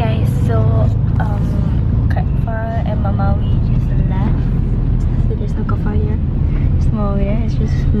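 Low, steady rumble of a van's engine and running gear heard from inside its cabin, with short stretches of voices over it.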